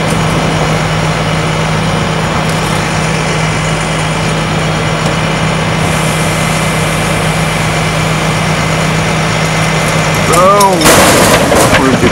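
Tow truck engine running steadily while its winch pulls a tipped-over enclosed cargo trailer upright. About ten and a half seconds in, the trailer drops back onto its wheels with a loud slam and rattle.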